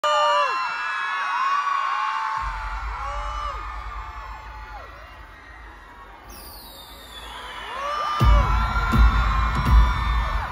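Arena crowd screaming and cheering in high-pitched shrieks over a low rumble. About six seconds in, a falling whoosh sweeps down through the music. Heavy bass hits start over the PA near the end as the song's intro kicks in.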